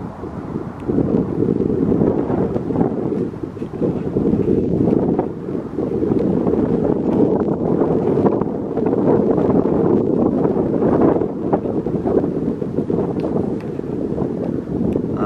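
Wind buffeting the microphone: a loud, rough noise that swells and dips in gusts.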